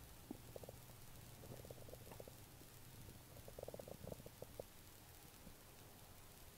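Near silence: a faint low room hum with scattered faint ticks and clicks in small clusters.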